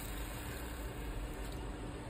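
Wood lathe running while a skew chisel takes a steady planing cut along a spinning spindle blank, shearing off shavings.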